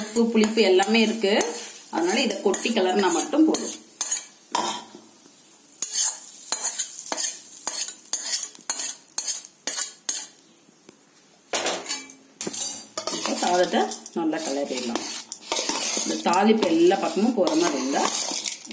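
Metal spatula scraping hot tempering out of a kadai onto cooked rice in a steel vessel, then stirring and mixing the rice, with repeated scrapes and clicks of metal on metal. Quick rapid clicks fill the middle stretch.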